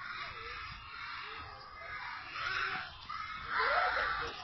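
Faint, distant shouts of young children at play, rising twice in the second half.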